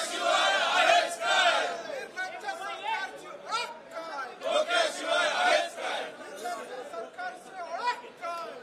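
A group of men shouting protest slogans in Marathi in unison, many voices overlapping in a rhythmic chant.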